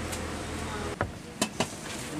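Hands working gram-flour dough in a plastic tub, with three sharp knocks of hand and dough against the tub about a second in. A steady low background hum runs under the first half and stops suddenly.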